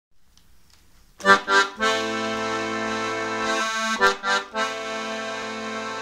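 Chromatic button accordion playing solo. After about a second of quiet come two short chords, then a held chord, then more short chords and another held chord near the end.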